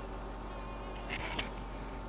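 Quiet room tone with a steady low hum and a faint, wavering high whine. A little after a second in comes a brief, soft rustle of yarn and plastic canvas being handled, as a loop of fluffy yarn is pulled up through the mesh.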